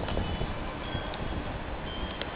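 Wind buffeting the microphone: a steady rushing noise with an uneven low rumble. A few faint, short high tones come through it.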